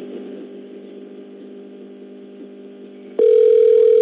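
Telephone line audio between calls as the number is redialled: a quiet steady line hum. About three seconds in, a loud single steady phone tone cuts in and holds.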